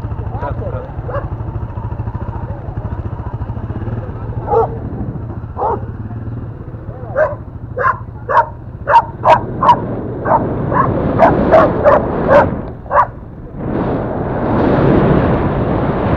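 Dogs barking, with scattered barks and then a quick run of about a dozen between roughly 7 and 13 seconds in, over the steady running of a Yamaha Crypton-X moped's single-cylinder four-stroke engine. Near the end a louder rush of engine and wind noise takes over.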